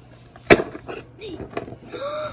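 A sharp snap about half a second in as a cardboard compartment door of a Toy Mini Brands box is pushed open, followed by light clicks and rustling as a small plastic mini toy is handled and pulled out.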